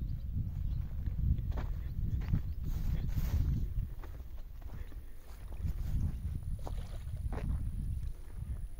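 Wind buffeting the microphone: a gusty low rumble, with a few faint rustles over it.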